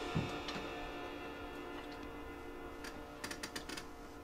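Upright piano notes left ringing and slowly dying away after the music drops off. A soft knock comes near the start, and a quick flurry of light drumstick ticks comes near the end.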